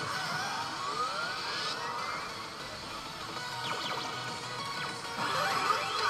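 ToLOVEる Darkness pachislot machine playing its effect music and sound effects during a chance countdown, with rising whooshing sweeps near the start and again near the end.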